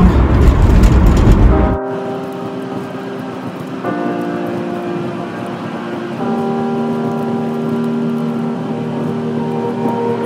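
Road and engine noise inside a moving car's cabin for about the first two seconds, then it cuts off abruptly and background music starts: sustained held chords that change twice, leading into a pop song.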